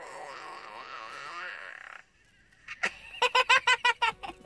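A young girl laughing: a soft giggle in the first couple of seconds, then, after a short pause, a quick run of staccato laughs in the last second.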